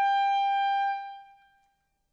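A clarinet holding one high note, which fades away about a second in.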